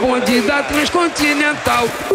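Radio station jingle: a heavily processed voice that holds and bends its pitch like singing, with a few sharp percussive hits.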